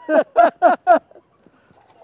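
A man laughing in a quick run of short bursts, about four a second, dying away after about a second.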